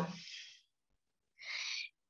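A woman's spoken word trails off into a breathy fade in the first half-second. After a silence, one short audible breath of about half a second comes near the end.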